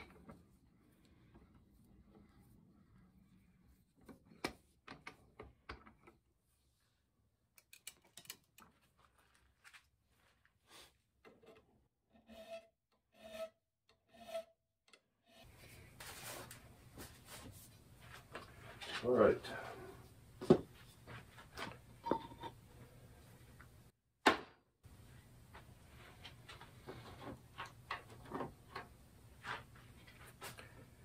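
A hand file taking three short, evenly spaced strokes across the steel cutting edge of an old auger bit, to sharpen and square it, after a spell of faint clicks. Then a cloth rubbing and wiping along the auger with irregular handling noises and one sharp knock.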